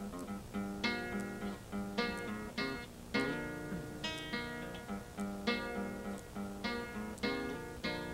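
Acoustic guitar played solo, strummed chords in a steady rhythm, each chord struck sharply and left ringing.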